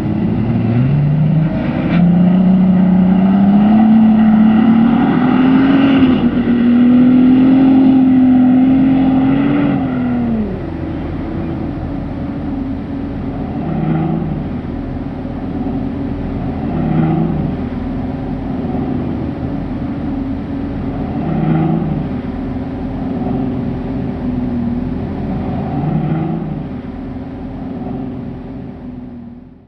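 Bentley Bentayga SUV engine working hard up a sand dune: its pitch rises through the first few seconds and holds high, then drops away about ten seconds in. After that the engine runs lower and quieter, swelling in short surges every three or four seconds.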